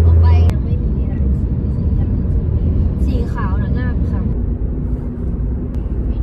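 Road and engine noise inside a moving car's cabin: a steady low rumble, very heavy for the first half second and then a little lighter.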